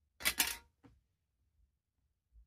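A short clatter of hard craft tools handled on the work table, lasting about half a second, then a single faint click a moment later, as the plastic ruler is moved aside while the wire armature is worked.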